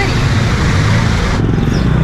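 Street traffic: motorcycle and car engines running and passing, with a steady low engine hum under a noisy hiss. About a second and a half in, the hiss drops away suddenly, leaving a lower engine hum.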